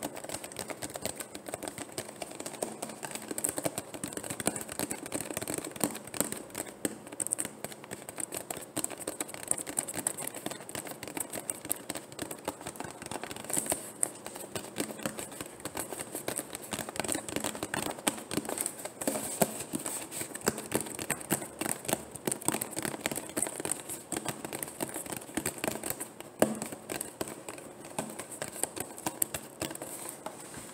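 Rapid, continuous fingernail tapping and crinkling on a thin plastic water bottle, a dense run of small sharp clicks.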